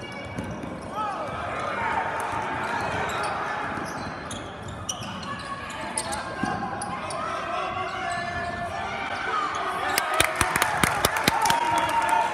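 Basketball dribbled on a hardwood gym floor with sneakers squeaking as players run and cut, over a babble of voices in the gym. A quick run of bounces comes in the last couple of seconds, the loudest part.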